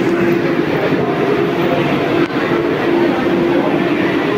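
Vande Bharat Express electric train set standing at the platform, its onboard equipment running with a steady hum and hiss, with one brief dip a little past halfway.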